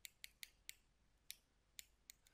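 About six faint, irregular clicks of a stylus tapping and lifting on a tablet screen during handwriting.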